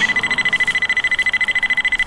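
Smartphone tracker app (Magic Finder) sounding its out-of-range alarm: a loud, fast-pulsing high-pitched beep held on one pitch, starting suddenly. It signals that the phone has lost the Bluetooth tag.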